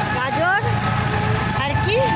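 Voices talking over the steady low rumble of a moving e-rickshaw (toto).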